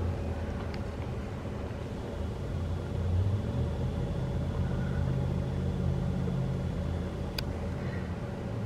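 Hotel room air conditioner running with a steady low hum that swells slightly midway, and a single sharp click near the end.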